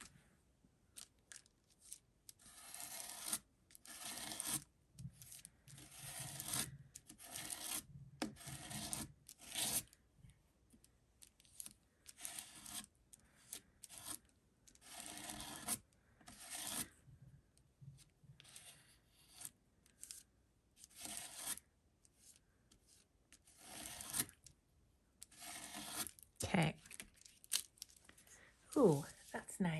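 Palette knife scraping modeling paste across a plastic stencil onto a paper card, in repeated scraping strokes of a second or two each with short pauses between.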